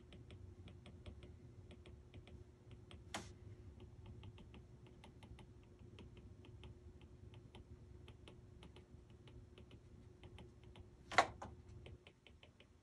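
Stylus tip tapping and clicking on a tablet's glass screen during handwriting: a run of light, irregular ticks, with a louder click about three seconds in and the loudest one near the end. A faint low hum underneath.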